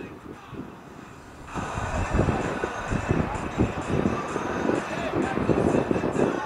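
Open-air football pitch ambience: distant players' voices over a steady outdoor background rumble, getting louder about a second and a half in.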